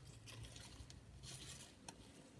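Near silence: faint rustling of potting compost as a scoopful is taken up, with a small click near the end.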